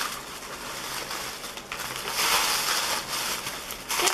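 Wig packaging crinkling and rustling as it is handled and pulled open, loudest about two seconds in.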